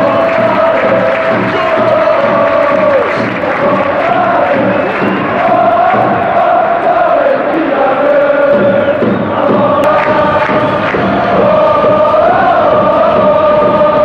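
A large football stadium crowd singing a chant in unison, long held notes with slow rises and falls of pitch, loud and unbroken.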